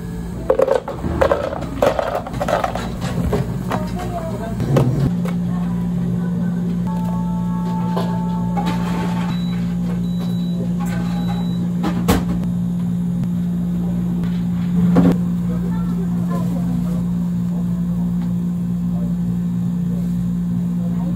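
Drink-making clatter: a quick run of knocks and clicks of a scoop and plastic blender jug for the first few seconds, then a steady low hum with a couple of single knocks.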